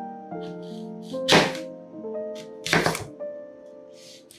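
A kitchen knife cutting through a crisp green apple and striking a wooden cutting board. There are two sharp chops about a second and a half apart, over soft background music.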